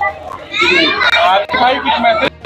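Excited people talking over one another, with one voice going high and rising in pitch about half a second in.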